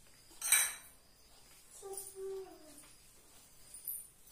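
A single sharp clink about half a second in, like a hard dish or metal object knocked. Near the middle comes a short, faint, pitched cry or squeak lasting about a second and falling slightly at the end.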